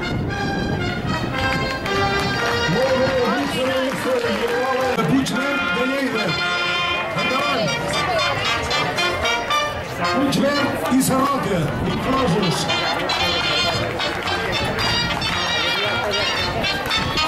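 A live band with brass plays a fast galop dance tune. People's voices rise over the music a few seconds in and again about ten seconds in.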